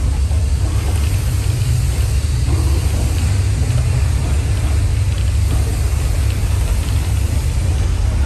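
Loud, deep, steady rumble of a simulated earthquake effect, the low end dominating throughout.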